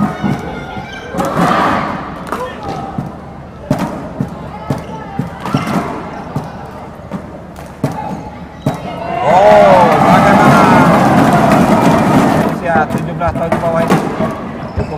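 Badminton rally: the shuttlecock is struck back and forth with sharp racket pops. About nine seconds in, the crowd in the hall cheers and shouts loudly for about three seconds as the point is won.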